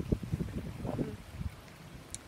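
Wind buffeting a phone microphone: uneven low rumbles that ease off about a second and a half in, leaving a faint steady background.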